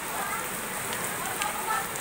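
Steady rain falling on a wet street.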